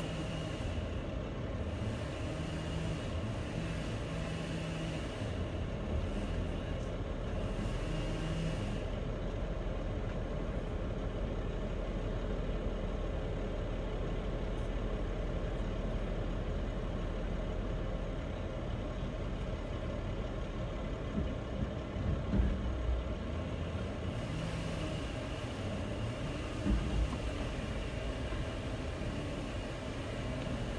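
Distant chainsaw running in on-and-off stretches at a tree's base, over a steady low background rumble.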